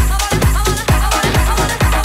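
Circuit/tribal house dance music from a continuous DJ mix: a steady four-on-the-floor kick drum about twice a second, with melodic synth lines over it.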